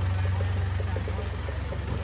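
Small cargo truck's engine idling with a steady low hum.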